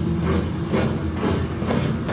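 A loud, deep rumble through the stage sound system with sharp knocks about twice a second, a bass-heavy interlude rather than the full song.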